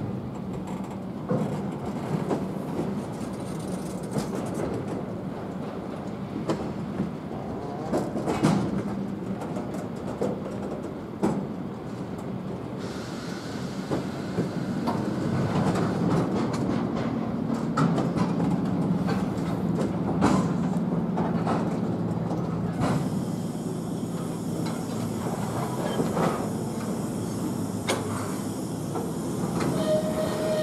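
Freight train of tank wagons rolling past, a steady low rumble of wheels on rails with irregular clacks and knocks as the wheels cross rail joints.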